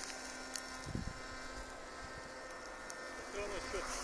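Faint, steady whine of a battery-powered RC flying wing's electric motor in cruise, with wind gusting on the microphone. A man starts talking near the end.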